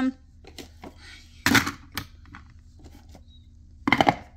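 Lacquerware coasters clacking against each other and their round holder as they are handled and stacked: a few short knocks, the loudest about a second and a half in and near the end.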